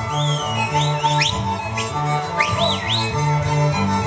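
Slovak folk string band with fiddles and a stepping bass playing a lively dance tune. Several high, sliding whistles rise and fall over the music, about a second in and again past the middle.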